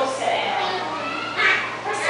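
Young children's voices chattering and calling out, with one louder, higher-pitched call about one and a half seconds in.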